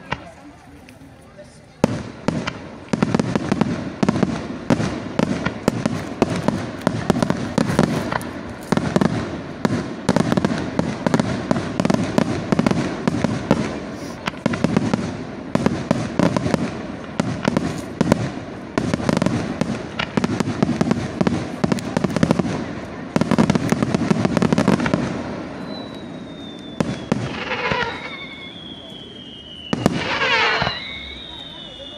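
Aerial fireworks display: a dense barrage of rapid cracks and bangs starts about two seconds in and runs for some twenty seconds before thinning out. Near the end come high whistles that fall slowly in pitch.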